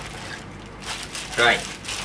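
Clear plastic bag crinkling in short rustles as a blood pressure cuff is pulled out of it.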